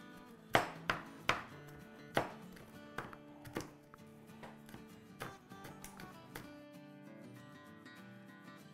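A kitchen knife chopping green chillies on a cutting board: about ten irregularly spaced strikes, the firmest in the first couple of seconds, stopping after about six seconds. Soft background music plays underneath.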